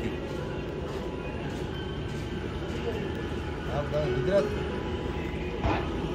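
A diesel bus engine running with a steady low rumble. Faint voices are heard briefly a little past the middle.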